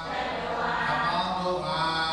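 Theravada Buddhist paritta chanting: male voices intoning Pali verses on long, held notes.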